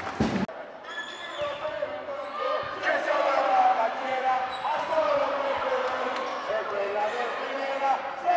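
Indoor volleyball rally in a large sports hall: sharp smacks of the ball being served and played, with short squeaks from players' shoes on the court over a steady crowd din.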